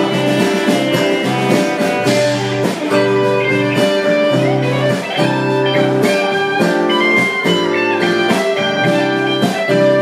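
Live band playing an instrumental blues-style passage: electric guitar over strummed acoustic guitar, with drums.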